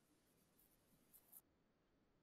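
Near silence: faint room hiss, with two brief faint noises a little past the first second.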